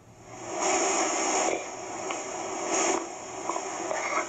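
Hiss from a Livescribe smartpen's small speaker as it plays back a child's reading recording through a long pause before a word. The hiss swells about half a second in and runs on with no voice in it.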